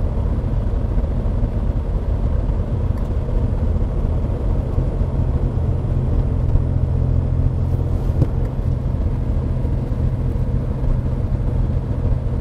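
A DeLorean DMC-12's PRV V6 running steadily at low revs while the car cruises slowly, a steady engine drone over road rumble.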